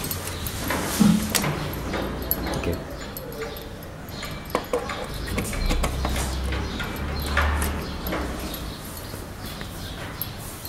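Scattered small clicks and knocks of a charger's barrel plug being fitted into the charging socket on an e-bike's frame battery, over a low handling rumble.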